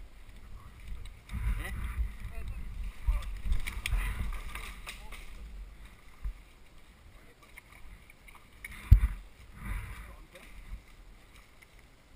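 Men's voices calling out at a distance, over uneven low rumbling on the microphone, with a single sharp knock about nine seconds in.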